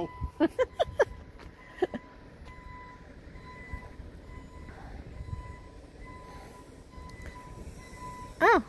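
Low steady rumble of heavy diesel machinery, a dump truck and skid steer working, with a thin steady high-pitched tone running through it. A few short laughs in the first second or two.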